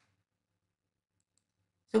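Near silence, broken only by two faint ticks a little past the middle; a man's voice starts speaking at the very end.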